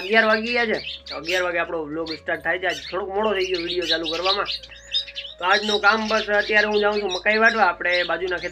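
A man talking, with a short pause about halfway through, and birds chirping in the background.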